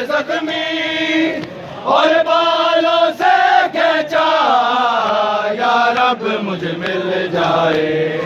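Men chanting an Urdu noha, a Shia mourning lament, in long drawn-out melodic phrases with short breaks between them.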